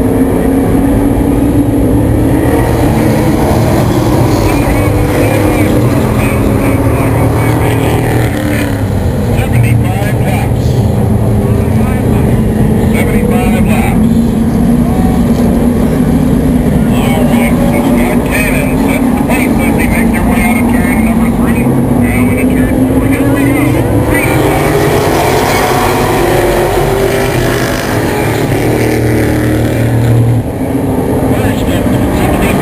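A pack of late model stock cars' V8 engines droning together on pace laps in double file. The combined engine note sags in pitch through the middle and climbs again near the end as the field goes around the oval.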